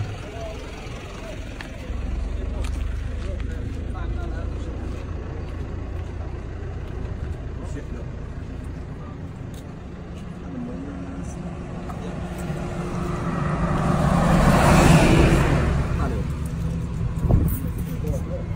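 Road traffic: a motor vehicle passing close by on the road, a steady low engine rumble that swells to its loudest about three-quarters of the way through, then fades.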